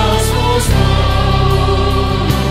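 A Korean worship song, a slow plea to the Holy Spirit to come, sung over instrumental backing with long held notes; the chord changes about two-thirds of a second in.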